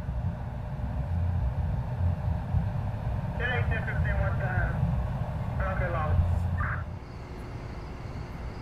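Outdoor ambience: a steady low rumble, with indistinct voices heard twice in the middle. The rumble drops away about seven seconds in, leaving a faint hiss.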